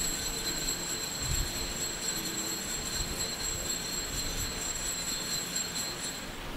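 Altar bell ringing continuously and steadily at a high pitch during the elevation of the host, marking the consecration at Mass.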